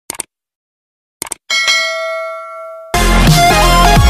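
Subscribe-button sound effect: a mouse click, then a double click about a second in and a bell ding that rings on and fades. Loud electronic dance music cuts in near the end.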